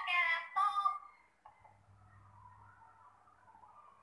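A high, sing-song voice for about the first second, then only a faint steady hum with a faint wavering tone.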